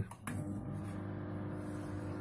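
LG MG-583MC microwave oven starting up about a quarter second in and then running with a steady hum. The oven runs but does not heat its load, a fault the repairer traces to the magnetron.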